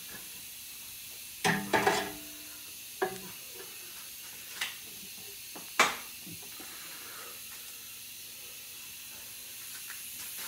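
A few scattered metal clinks and knocks as rear suspension parts are handled, over a steady background hiss. The loudest is a clatter with a short ring at about a second and a half in, followed by two small clicks and one sharp knock about six seconds in.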